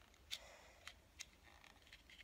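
A few faint clicks from a small plastic magic coin-box prop being handled and turned, spaced about half a second apart, over near silence.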